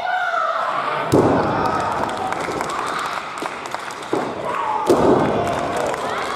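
Two heavy thuds of a wrestler's body hitting the ring canvas, about a second in and near the end. Each is preceded by a shout.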